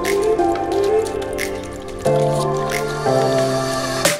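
Background music: sustained chords changing about once a second, with light percussive ticks over them.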